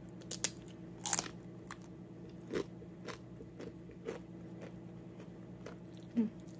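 Tortilla chip loaded with cheesy corn bitten and chewed close to the microphone: a few sharp crunches, the loudest about a second in, then quieter chewing crunches.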